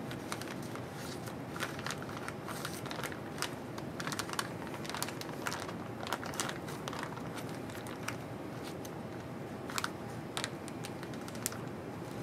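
Plastic resealable zipper bag crinkling and rustling as gloved hands slide a tissue-wrapped plate into it, with many irregular sharp crackles.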